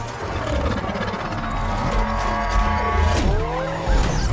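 Film-trailer mix of car-chase sound effects: tires screeching in curving squeals, twice, over music with a heavy bass. Around the middle a high, steady mechanical whine sounds.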